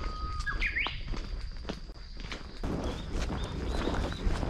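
Footsteps on a forest path with wild birds calling: a whistled call that rises in pitch about half a second in, then short high chirps near the end, over a thin steady high tone.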